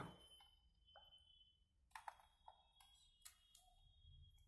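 Near silence: room tone with a few faint clicks, two close together about halfway through and one more near the end.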